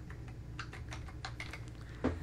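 Typing on a computer keyboard: a quick, irregular run of key clicks, about five a second.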